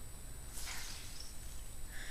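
Faint rustle of a damp ShamWow cloth being rolled up in the hands, with one soft swish about half a second in, over a low steady hum.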